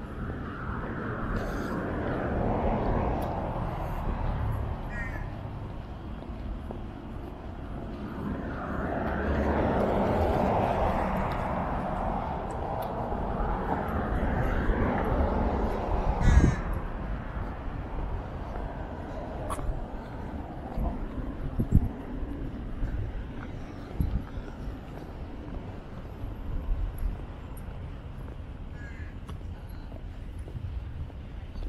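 Outdoor street ambience: a broad rushing noise, like a passing vehicle, swells and fades twice, near the start and again from about eight to sixteen seconds, with a few short bird calls and a sharp knock about sixteen seconds in.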